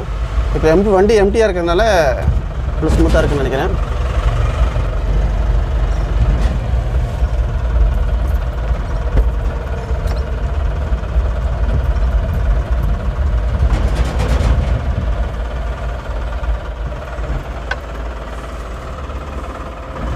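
Cab of a Maruti Suzuki Super Carry mini truck on the move: its 793 cc two-cylinder turbo-diesel engine running with a steady low rumble under road noise.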